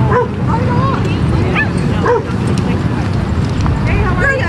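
A dog barking in a few short, high yips, mostly in the first half, over a steady low rumble.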